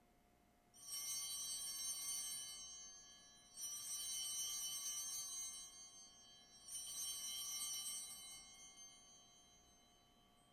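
Altar bells rung three times, about three seconds apart, each ring a bright cluster of small bells that fades away over a couple of seconds. The ringing marks the elevation of the chalice at the consecration.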